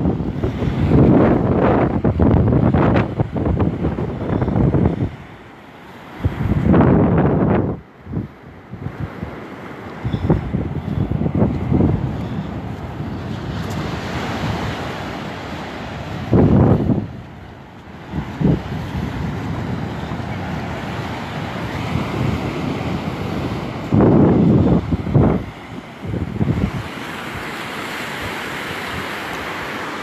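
Wind buffeting the microphone in repeated loud gusts, over a steady rush of small surf breaking on a sandy beach.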